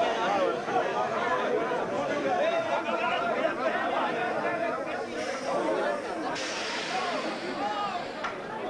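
A group of miners talking over one another in a steady babble of men's voices. A steady hiss joins in about six seconds in.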